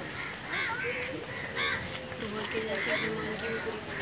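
Crows cawing, several harsh caws about a second apart, over a background of people talking.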